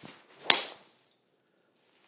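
TaylorMade M2 driver swung with a brief whoosh, then one loud, sharp crack as the clubface strikes a teed ball about half a second in, with a short ringing tail. A solid, centred strike.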